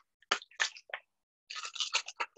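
Homemade shaker, plastic bread ties rattling inside a lidded container as it is shaken: three separate shakes, then a quicker run of rattling near the end.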